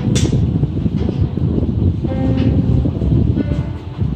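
Acoustic guitar being played, with a few plucked notes about two seconds in, heard faintly over a heavy, steady low rumble. There is a sharp click right at the start.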